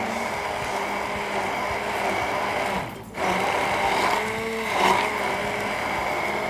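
Handheld electric stick blender running steadily as it purées a keluak (black nut) spice paste in a tall beaker. It cuts out briefly about three seconds in, then runs again.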